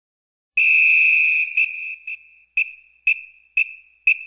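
A shrill whistle: one long blast about half a second in, then five short blasts about two a second.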